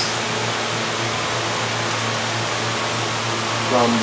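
Steady rushing fan noise with a constant low hum underneath, unchanging throughout.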